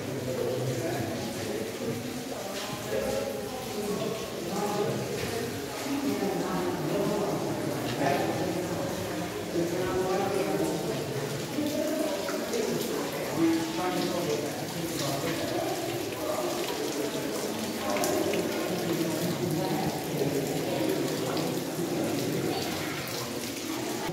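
Indistinct voices of a group of people talking inside a cave, over a steady trickle of water running and falling down the rock walls.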